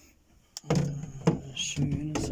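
A short hush, then a man's voice begins about two-thirds of a second in, with a couple of light knocks, one just before the voice and one during it.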